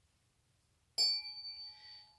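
A pair of tuning forks struck once with a ball-headed mallet about a second in, then ringing with several clear tones: the higher ones fade over the next second while a lower tone holds steady.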